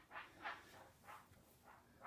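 Near silence: room tone, with a few faint breathy puffs in the first second.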